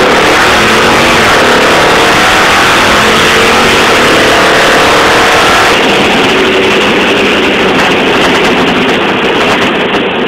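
1968 Ford Mustang Fastback's engine under hard acceleration, heard loud from inside the car. Its pitch climbs, drops back about two seconds in and climbs again for several seconds, as with a gear change, then it runs on loud at speed.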